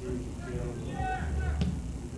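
A soccer ball struck once on a goal kick, a single sharp thud about a second and a half in, over distant shouting voices and a steady low rumble.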